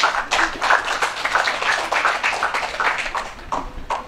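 Audience applauding: many hands clapping irregularly, thinning out near the end.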